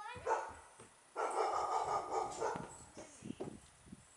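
A dog whining and barking: a short rising whine at the start, then a longer, louder run of barking.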